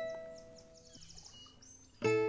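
A plucked acoustic guitar note from background music rings out and fades, leaving a low-level pause with faint high chirps.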